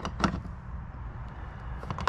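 Two sharp clicks in the first quarter second, then low rustling and rumbling as a metal swivel caster is handled against the cart's plastic base.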